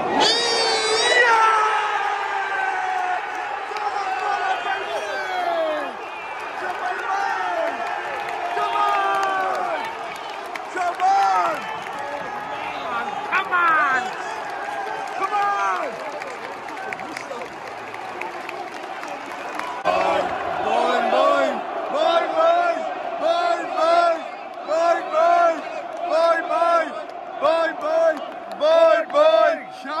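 Football crowd erupting in a roar as an equalising goal goes in, then fans singing together, turning into a steady rhythmic chant from about twenty seconds in.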